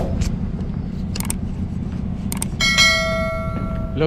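A single bell-like ringing tone starts sharply about two and a half seconds in and holds for just over a second. It rings over a steady low rumble, with a few faint clicks.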